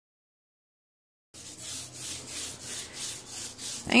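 Small foam roller rolling a thin coat of glue back and forth over an EVA foam sheet, a quick run of sticky rubbing strokes, about four a second. It starts abruptly about a second in.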